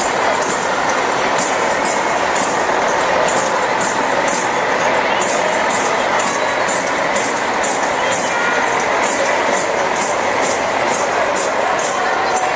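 Street-parade din: a steady jingling beat, about three to four strokes a second, over a dense wash of crowd and slow lorry noise as a float truck passes.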